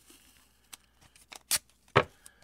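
Wide blue painter's tape being pulled off the roll and torn: a few faint clicks, then two sharp snaps in the last half second, the last the loudest.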